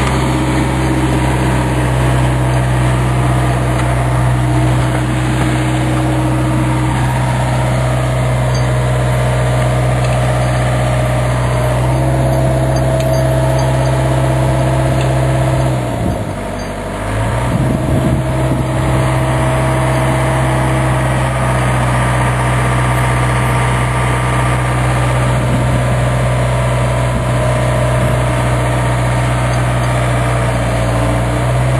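John Deere excavator's diesel engine running steadily, its note dipping briefly about halfway through before picking back up.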